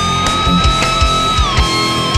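Overdriven electric guitar lead through a Kemper profile of a Mesa Boogie Triple Crown TC-50 amp: a note bent up at the start, held, and let back down about three quarters of the way through, over a rock backing track with a steady beat.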